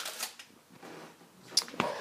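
Quiet rustling and handling noise from tin foil and the phone being moved, with a few sharp clicks near the end.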